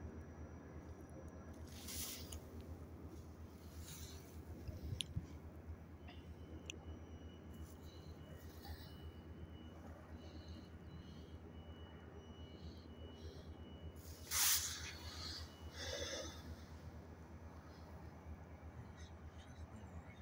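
Diesel locomotive of a stopped Metrolink commuter train idling: a low, steady, regularly pulsing rumble. A couple of short hisses stand out over it, the loudest about three-quarters of the way through.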